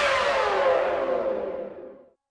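The closing music of a Bhojpuri song dying away. The beat has stopped, and a lingering tone slides steadily down in pitch as it fades out, gone right at the end.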